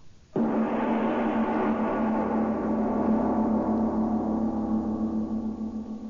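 A gong struck once, about a third of a second in, then ringing on for over five seconds with many steady overtones, the highest slowly fading. It is the show's gong cue that opens the play.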